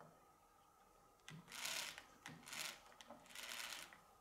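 Faint rubbing and scraping of fingers working the circular saw disc and its metal washers on the saw arbor, in three short bursts in the second half.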